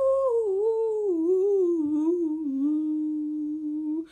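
A single voice humming one long unaccompanied note that wavers and slides downward in pitch, then holds steady over the last second or so.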